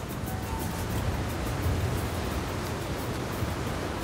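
Steady wash of ocean surf on a beach, with faint background music underneath.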